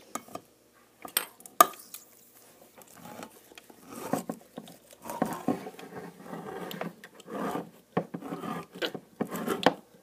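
Hand-held can opener being worked around a tin can. There are a few sharp metal clicks about one to one and a half seconds in, then a run of small irregular clicks and scrapes from about four seconds on.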